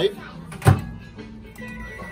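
Microwave oven door shut with a single thunk a little under a second in, then a steady keypad beep near the end as the oven is started.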